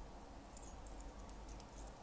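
Faint scattered light clicks and taps of fingers typing on a phone, over quiet room tone.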